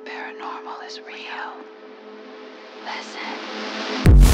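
Whispered voices over a steady droning hum of held tones, with a hiss that swells toward the end.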